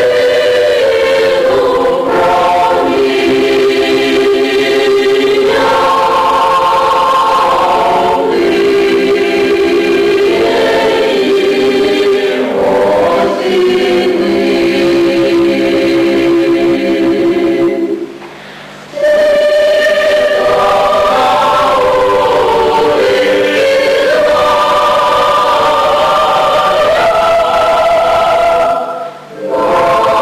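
A choir led by women's voices sings a Ukrainian folk song in long, sustained phrases. The voices break off briefly about 18 seconds in and again near the end, then carry on.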